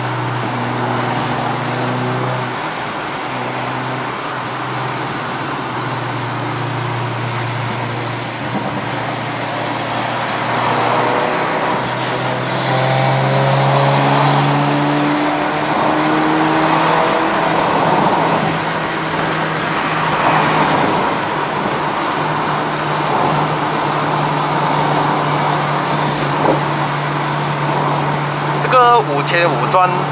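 The Honda City's 1.5-litre i-VTEC four-cylinder heard from inside the cabin, pulling steadily under tyre and road noise. The engine note rises in pitch partway through.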